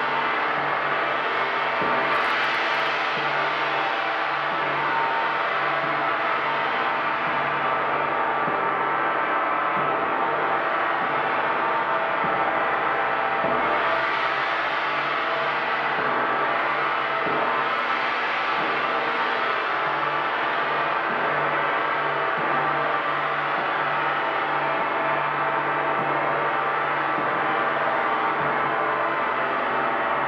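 Large hanging gong played continuously with a felt-headed mallet. The repeated soft strokes keep up a dense wash of many overlapping ringing tones at a steady level, with no break.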